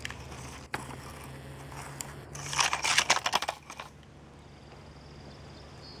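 Dry dirt and clods crunching and scraping, loudest in a crackly burst of a little over a second about halfway through, after a single click near the start.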